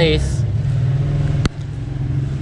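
A motor engine running steadily close by, a low drone with an even fast pulse, and a sharp click about one and a half seconds in.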